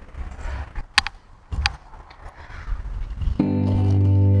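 Inline skates on 80 mm wheels rolling over paving, a low rumble with two sharp clacks in the first two seconds. Background music with guitar and keyboard starts loudly about three and a half seconds in.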